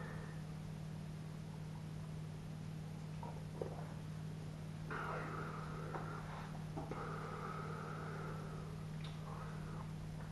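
Faint sipping and mouth sounds from a man drinking and tasting a glass of stout, clearest in the second half, over a steady low hum in a quiet room.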